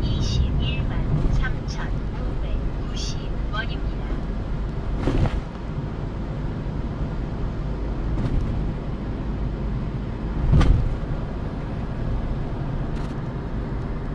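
Car road noise heard from inside the cabin while driving at speed: a steady low rumble of tyres and engine. Two short thumps from the tyres about five and ten and a half seconds in, the second louder.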